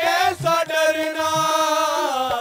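Live Hindi devotional bhajan: a long sung note is held over harmonium accompaniment, with a steady low beat underneath.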